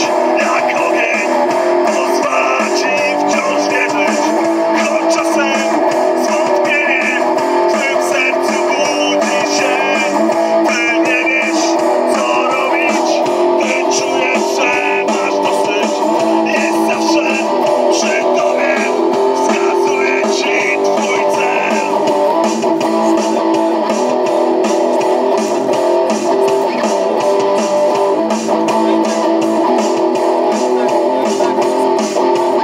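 Electric guitar played live through PA loudspeakers, a continuous passage without a break.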